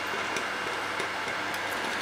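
Steady low hum from the laser engraver setup, with a few faint light clicks as a hand handles the thin metal plate on the engraver bed.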